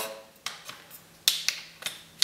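A few sharp clicks and taps as the metal cap and body of a soft-plastic injector, a big syringe, are handled, the loudest about a second and a quarter in.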